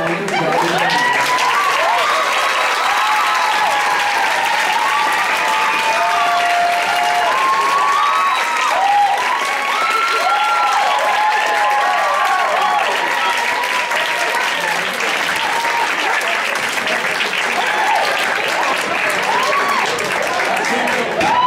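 An audience applauding and cheering, with many whoops, starting just as the dance music cuts off.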